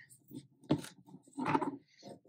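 Handling noise: two short knocks with rustling, about a second apart, as a crocheted bag on a metal macramé ring is moved on the table.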